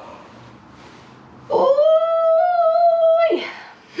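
A woman's voice making a stretching vocalisation: one long, high, steady note held for about two seconds, sliding up into it and dropping away at the end, after a soft breath.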